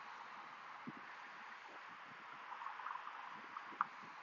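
Faint outdoor ambience: a soft steady hiss with a few small ticks, one slightly clearer near the end.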